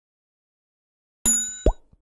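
Notification-bell sound effect: after about a second of silence, a bright chime rings and fades, with a short rising pop partway through it and a faint click near the end.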